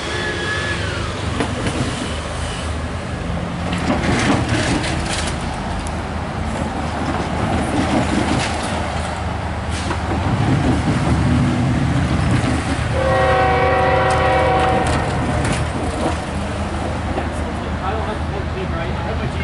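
Approaching diesel freight locomotive sounding its multi-note air horn in one chord of about two seconds, around thirteen seconds in, over the steady low rumble of the oncoming train.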